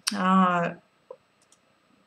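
A woman's voice holding one vowel at a steady pitch for under a second, a hesitation sound between phrases, followed by a few faint clicks.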